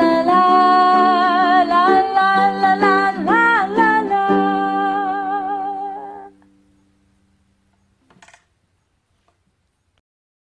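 A woman singing a 'la la la' melody with vibrato over ukulele chords, ending on a long held note that fades out about six seconds in. Near silence follows, with one brief faint noise near the end.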